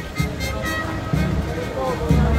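Band music playing a slow march, with a deep drum beat about once a second, over the voices of a crowd.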